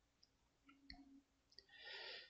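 Near silence with a few faint clicks of a computer mouse as a web page is scrolled, the clearest about a second in.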